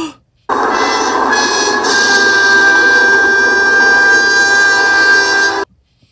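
A loud, sustained chord of several steady tones that starts abruptly about half a second in and cuts off suddenly about five seconds later: an edited-in 'magic' sound effect.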